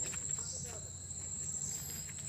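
Insects, such as crickets or cicadas, drone steadily in one unbroken high-pitched tone, with a few light knocks of footsteps.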